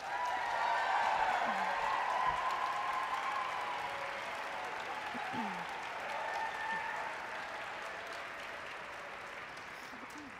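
A large audience applauding with cheers, loudest at first and slowly dying away.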